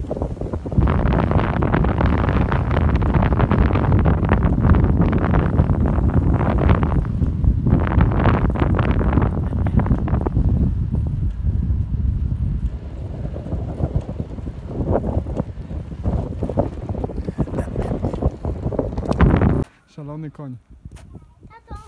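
Wind buffeting a phone's microphone outdoors, a loud low rumble that rises and falls in gusts, cutting off suddenly near the end.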